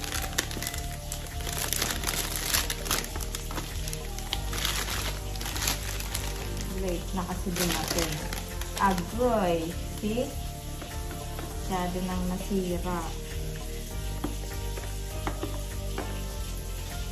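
Plastic flower sleeve and cellophane wrap crinkling and rustling in irregular bursts as they are handled and pulled off a bunch of roses.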